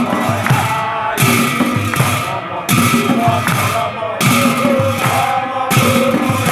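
Men chanting nam, Assamese Vaishnava devotional group singing, with large brass hand cymbals clashed on a steady slow beat. The cymbals crash four times, about every second and a half, each crash ringing on under the voices.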